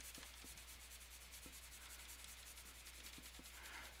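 Near silence: room tone with a steady low hum and a few faint ticks.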